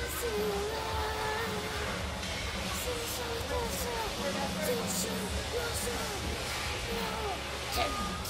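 A child humming a wavering tune while miming drumming, over faint background music.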